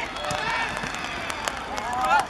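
Several voices calling out and talking around a football pitch during play, over a steady outdoor background, with a few short sharp taps.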